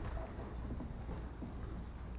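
Low, steady hum of a meeting room with faint rustling and a few small ticks, as papers are handled at a table.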